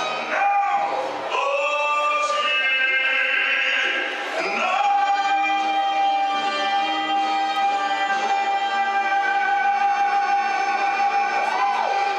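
Operatic singing over music, ending on one long held high note from about five seconds in until near the end.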